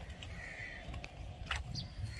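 A bird gives one short call about half a second in, over a steady low rumble. A sharp click comes about a second and a half in.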